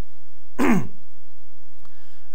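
A man clearing his throat once, a short sound with a falling pitch about half a second in.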